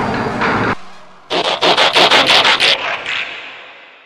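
Dubbed-in sound effects: a loud noisy crash that stops suddenly under a second in, then a quick run of about eight sharp mechanical strokes with an echoing tail that fades away. This is a transformation effect for a toy truck turning into a robot.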